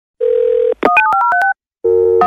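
Telephone dial tone for about half a second, then a rapid run of touch-tone (DTMF) keypad beeps as a number is dialed, each beep a pair of pitches. Another steady phone tone starts near the end.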